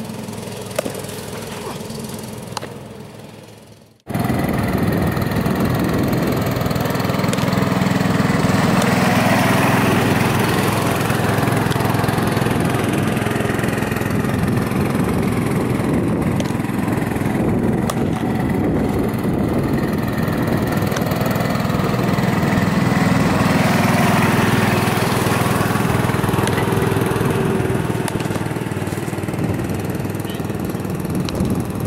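A ride-on lawn mower's small engine running steadily and loud. It starts abruptly about four seconds in and slowly swells and fades as the mower moves. Before that, over quieter field sound, there are two sharp pops of a baseball into a catcher's mitt.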